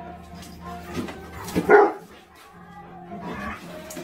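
A dog gives one short, loud bark about one and a half seconds in, over background music.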